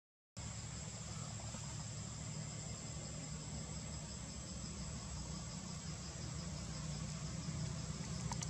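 Steady outdoor chorus of insects, a continuous high-pitched trill with a faster pulsing note beneath it, over a low steady rumble. The sound drops out for a split second right at the start.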